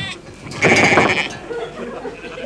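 A single wavering sheep's bleat starting about half a second in and lasting under a second, followed by a fainter, held tone.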